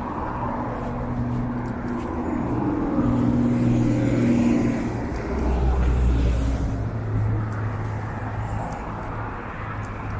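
Road traffic on a wide multi-lane avenue: cars and heavy vehicles passing with steady engine hum. It is loudest from about three to six and a half seconds in, as a city bus and a truck go by.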